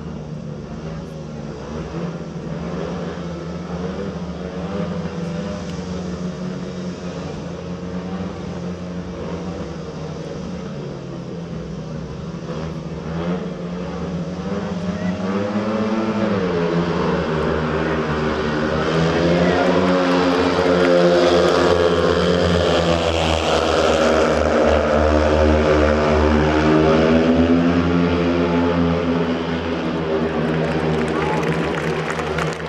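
Speedway bikes' 500 cc single-cylinder engines running and being revved at the start gate. About halfway through they rise sharply as the riders launch. The bikes then run together at full throttle, louder, with the pitch wavering up and down.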